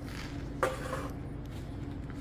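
A steel pan holding babbitt metal is set down on an electric hot plate, making one short clunk about half a second in, over a steady low hum.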